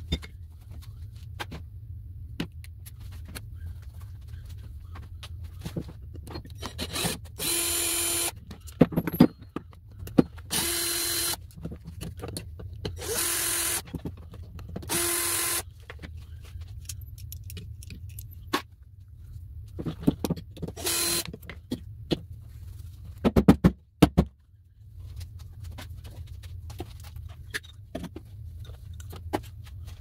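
A cordless drill-driver runs in five short bursts of a steady whine, backing the screws out of small electric motors. Between the bursts, screws and metal parts click and knock on a wooden workbench, with a couple of louder knocks a little after the last burst, over a steady low hum.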